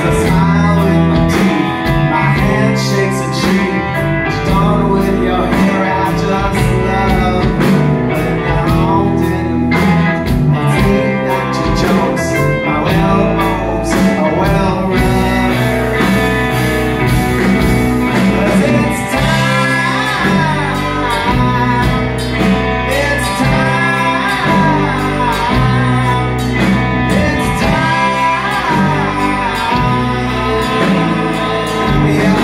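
Live rock band playing, guitars prominent, with a lead vocal singing through the latter part.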